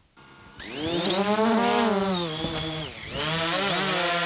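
Quadcopter drone's electric motors and propellers whining as it flies. The whine starts about half a second in, rises in pitch, dips, then holds steady.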